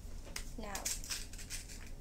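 Ice cubes being pressed loose from an ice cube tray: a run of small irregular clicks and crackles.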